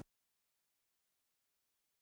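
Complete silence: the soundtrack is cut off to dead silence.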